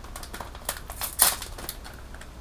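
Thin plastic packaging of an air freshener crinkling as it is worked open and handled: a few short, sharp crinkles and crackles.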